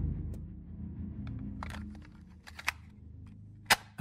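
A low rumbling drone fading away, with a few scattered faint clicks and one sharper click near the end.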